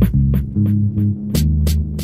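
Dub reggae instrumental stripped down to a deep bass line and drums. The bass steps between low notes while sharp drum strokes land about three times a second.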